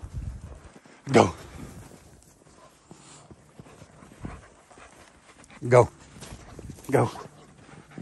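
A young livestock guardian dog moving close by in snow, with faint scuffling and breathing, between three short shouts of "go".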